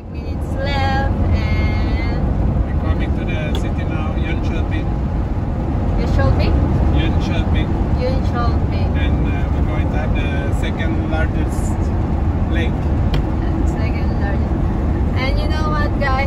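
Steady low rumble of engine and tyre noise inside a motorhome's cab while it drives at motorway speed, with voices talking over it at times.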